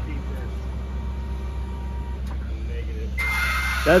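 Genie GS-2032 electric scissor lift raising its platform: the electric hydraulic pump motor runs with a steady hum. A hiss joins it near the end.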